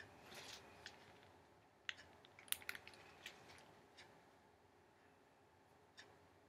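Near silence: room tone, with a few faint short clicks in the middle.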